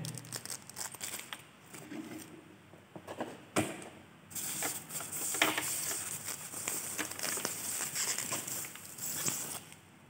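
Plastic packaging wrap crinkling as it is handled and pulled away from a dome security camera, steady and dense through the second half. A sharp click comes about three and a half seconds in, among lighter handling noises before the crinkling starts.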